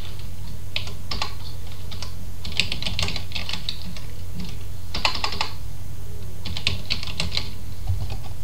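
Computer keyboard typing in four short runs of keystrokes, over a steady low hum.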